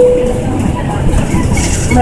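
Inside a moving city transit bus: the steady drone and rumble of the bus engine and road noise, with a short single-pitched electronic beep right at the start.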